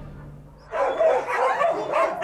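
Several dogs barking and yapping at once, starting suddenly less than a second in, short calls overlapping in a dense, continuous din.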